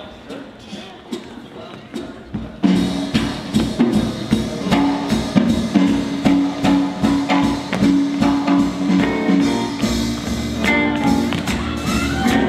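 Live band playing a blues: a quiet drum intro of sparse strikes, then the full band comes in loudly about two and a half seconds in and plays on.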